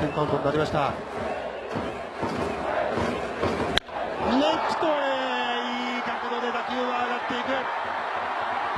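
A sharp crack of the bat about four seconds in, as a baseball is hit for a home run, then the stadium crowd cheering, with one long drawn-out shout held for about four seconds.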